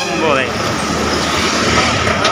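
Roadside traffic noise, a steady rush of passing vehicles, mixed with nearby voices; a man's call falls in pitch and trails off in the first half second.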